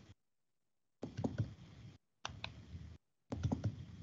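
Faint computer keyboard typing and clicking, heard over a video call, in three short bursts that cut in and out abruptly, each holding a few sharp key clicks.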